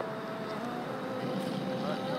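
Outdoor city ambience: a steady hum of traffic with faint voices of passers-by.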